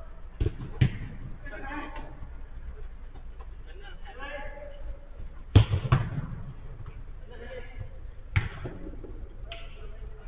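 A football being kicked on an indoor artificial-turf pitch: a series of sharp thuds, twice in the first second, the loudest about five and a half seconds in, and again near eight and a half and nine and a half seconds. Players' calls are heard between the kicks.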